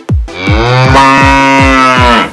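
A cow's long moo lasting about two seconds, laid over a techno beat whose kick drum thuds about four times a second.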